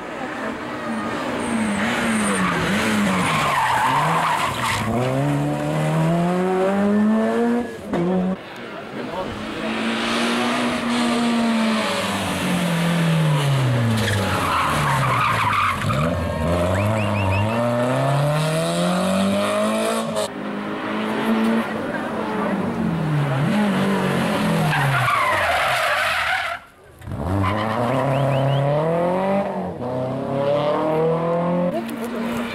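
Rally car engines revving hard, pitch climbing and falling again and again through gear changes, one car after another, with tyres skidding on the tarmac.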